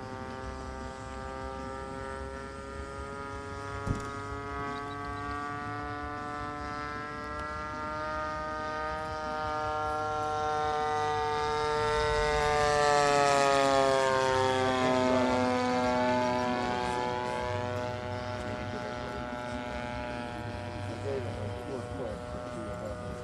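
VVRC 20cc gasoline twin-cylinder engine and propeller of a Robin Hood 80 RC model airplane in flight, running at a steady throttle. It grows louder as the plane passes about thirteen seconds in, and its pitch drops as the plane flies away. A single sharp click about four seconds in.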